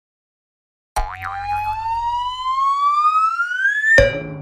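Logo-intro sound effect: silent for the first second, then a sudden hit and a single synthetic tone that rises steadily in pitch for about three seconds over a brief low rumble, ending in another hit.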